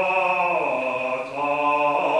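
A trained male voice singing solo in a classical style, holding long notes. The pitch slides down about a third of the way in, and a new note starts after a short break near the middle.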